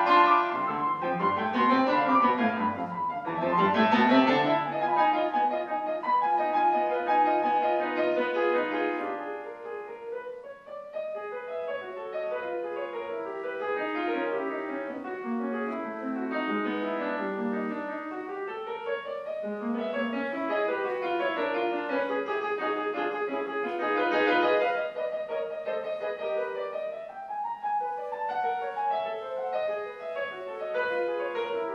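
Solo grand piano playing classical music in sweeping rising and falling runs, loud at first, then dropping to a softer passage about ten seconds in and swelling again later.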